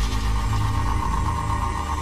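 A steady low drone under a hissing electronic static that sets in just before, with a steady whine that grows stronger. It is the interference noise that spreads across the security cameras in the footage, mixed with dark background music.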